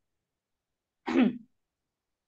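Dead silence broken once, a little past a second in, by a woman's short voiced sound of under half a second that falls in pitch, like a brief throat clearing.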